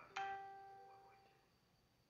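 A single chime rings out once, shortly after the start, with several steady tones that fade away over about a second and a half.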